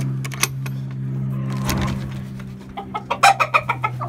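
Scattered clicks and knocks of a wooden coop door's latch and metal handle being worked, then chickens clucking in a quick, loud run of calls over the last second or so.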